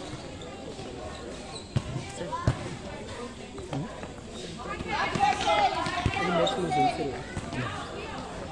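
A futsal ball being kicked and bouncing on a hard concrete court, with sharp knocks about two seconds in, again half a second later, and once more near six seconds. High, loud voices call out over the play in the second half.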